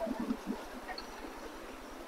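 Faint, steady outdoor background noise, with a few short, soft low sounds in the first half second.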